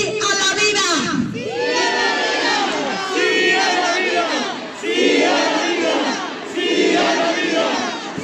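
Crowd of demonstrators shouting together in several loud surges, with short dips between them.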